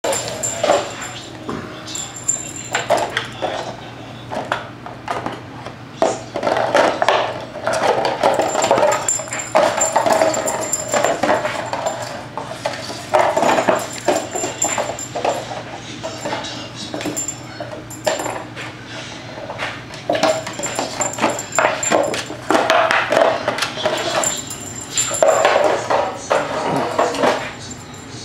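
Small dog playing with a plastic bottle: the bottle crackles and crunches in its teeth and paws, with repeated bouts of play growling.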